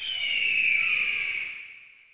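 A high, sustained tone that falls slightly in pitch and fades out over about two seconds.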